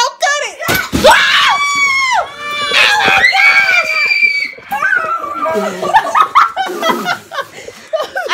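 A giant Orbeez-filled balloon bursting as it is cut open, one sharp pop just under a second in. Loud, long, high screams of excitement follow.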